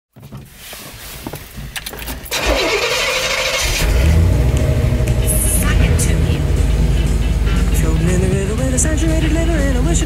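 A few clicks, then about two seconds in a square-body GMC truck's engine cranks and catches, settling into a steady low rumble as the truck pulls away. A song with a singing voice comes in near the end.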